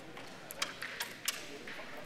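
A flicked crokinole disc sliding across the wooden board and striking another disc and the pegs: a few sharp clicks spread over about a second, starting about half a second in. Room chatter murmurs underneath.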